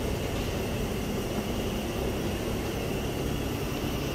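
Steady low rumble and hiss of background noise, with a faint high whine held throughout and no distinct events.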